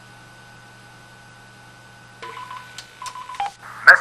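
Telephone line hum, then a little over two seconds in two dual-tone telephone keypad tones of about half a second each and a shorter lower tone, followed near the end by a click and telephone-line hiss.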